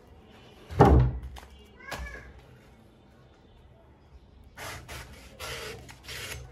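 A meat cleaver chopping into a palm fruit on a wooden cutting board: one heavy chop about a second in and a lighter one at two seconds, then the blade cutting through the fruit's skin in short scraping strokes near the end.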